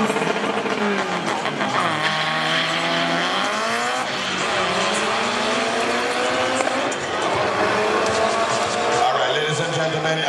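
Two race cars' engines accelerating hard down a drag strip, the pitch climbing and then dropping back at each gear change, several times over.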